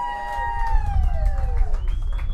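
Live blues band playing: a long held lead note that bends and then slides slowly down in pitch, over bass and drum hits.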